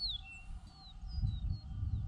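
Wild birds chirping in open marsh: several short, thin, downward-sliding chirps, most of them near the start, over a low rumble that grows louder about halfway through.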